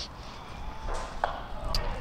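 Quiet cricket-ground ambience from the field microphones: a low rumble with a faint distant voice, and one light click a little past halfway.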